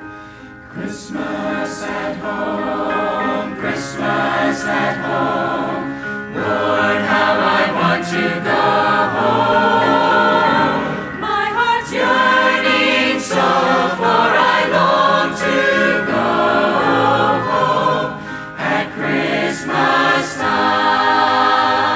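Mixed church choir of men's and women's voices singing a Christmas cantata piece, swelling in loudness over the first several seconds.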